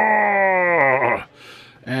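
A man's voice holding one long drawn-out syllable that slides slowly down in pitch and stops about a second and a quarter in, followed by a brief pause.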